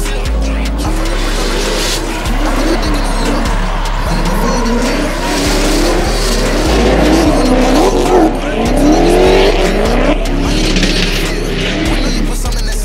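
Drift cars in a tandem run, the lead one a 2JZ-engined Nissan 240SX: their engines rev up and down repeatedly and the tyres squeal as they slide. Hip-hop music with a heavy bass beat plays over them.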